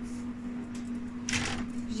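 A steady low motor hum, like the pump of a jacuzzi, running without change. A short rustling noise comes past the middle.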